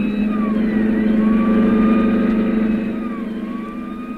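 Radio-drama car-chase sound effect: a car engine running at speed with a steady drone, and a police siren wailing behind it, its pitch slowly falling and rising.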